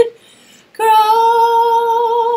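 A woman singing unaccompanied: a note ends, a short gap for breath, then just under a second in she holds one long note with a slight vibrato.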